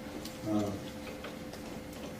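A man's brief hesitant "uh" in a lecture pause, with a few faint scattered ticks and a steady faint hum.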